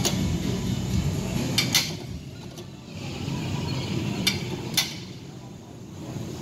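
Gym room noise: a low steady rumble, quieter after about two seconds, with a handful of sharp clicks or knocks scattered through it.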